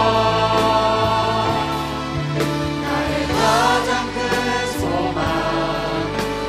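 A worship vocal team of men and women sings a Korean praise song through microphones over sustained instrumental accompaniment, with held low notes underneath.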